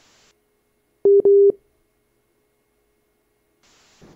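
Censor bleep: a loud, steady electronic beep lasting about half a second, broken once, with the sound cut to silence before and after it.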